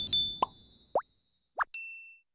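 Cartoon sound effects on an animated end card. A music sting dies away, then three quick rising pops come about half a second apart, and a short bright ding sounds near the end.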